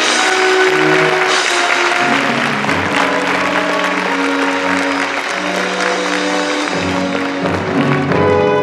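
Theatre orchestra playing, with audience applause building about a second in and dying away near the end.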